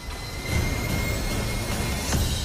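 A low, steady rumbling sound effect from the soundtrack with a faint high tone over it, swelling about half a second in.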